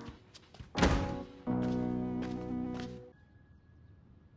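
A heavy front door shutting with a single loud thunk about a second in, preceded by a few light clicks; background music plays around it and stops shortly after three seconds.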